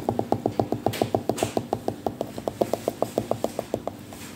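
Fingers drumming rapidly on the rind of a large pomelo: a quick, even run of taps, about seven or eight a second.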